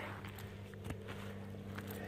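A faint, steady low hum with a few light clicks.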